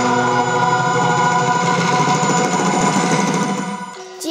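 Mixed-voice choir holding one sustained chord, which fades out near the end.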